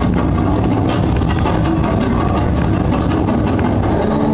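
Loud, bass-heavy stage-show soundtrack: a deep, steady rumble with music underneath.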